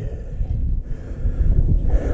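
Wind buffeting the camera microphone: an uneven low rumble that rises and falls.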